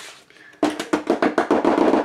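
Green plastic Cricut cutting mat tapped rapidly on its edge against the tabletop to knock off loose cardboard fuzz left from the cut. The quick run of sharp taps starts about half a second in and keeps going.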